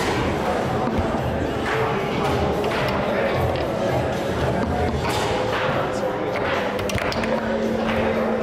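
Background music and indistinct voices in a hall, with the clatter of foosball play: the ball rolling and knocking against the plastic men and rods, and a few sharp knocks.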